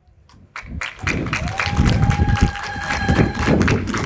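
Audience clapping and cheering, starting about a second in, with one voice holding a long, steady high-pitched call over the clapping for about two seconds.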